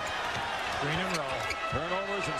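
Arena crowd noise from a televised basketball game, with a basketball bouncing on the hardwood court and a man's commentary voice in the second half.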